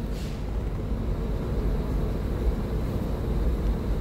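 Steady low rumble with a faint hiss, unchanging throughout, with no distinct knocks or tones.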